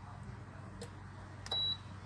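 Touch control panel of a Vestel Şölen T3500 grill and toaster giving one short, high beep about a second and a half in as a button is pressed to switch a heating plate off. A faint click comes a little earlier.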